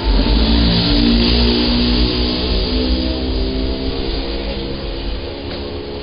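Background music with a plucked guitar playing held notes, slowly fading out.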